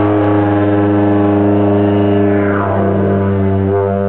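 Didgeridoo drone held steady on one low note, with a bright overtone that glides downward in pitch a little past halfway through.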